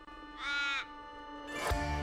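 One short cawing call about half a second in, over a soft held musical note; music with a low bass line comes in near the end.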